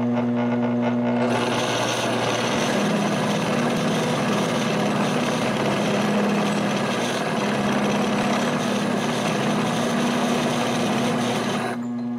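Homemade wooden milling machine running, its motor giving a steady hum. About a second in, the end mill starts a cleanup pass along the face of a steel block, and a continuous harsh scraping of the cut runs over the hum. The cutting stops just before the end, leaving the hum alone.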